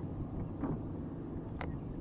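Wind rumbling on the microphone, with one short click a little past the middle.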